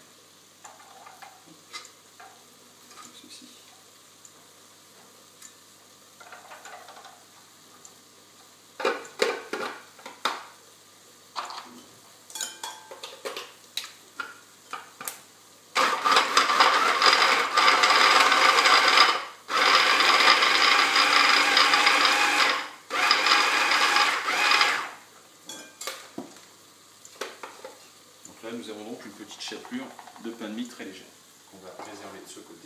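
Stick blender's mini chopper attachment running in three bursts of a few seconds each, with a high whine, grinding crustless sandwich bread into fine breadcrumbs. Before it starts there are light clicks and knocks as the bread pieces go into the plastic chopper bowl and the lid and motor unit are fitted.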